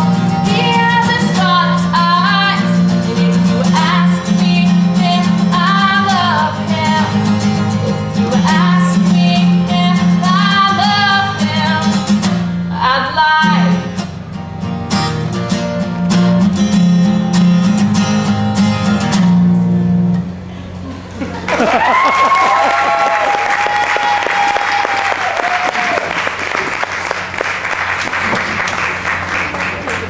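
A woman singing with her own acoustic guitar accompaniment, the song ending about two-thirds of the way through. Then an audience applauding and cheering.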